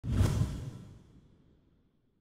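A whoosh sound effect that starts suddenly and fades away over about a second and a half, typical of an edited intro transition.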